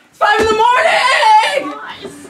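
A person screaming in a high-pitched, drawn-out shriek in a small room, with a sharp thump about half a second in.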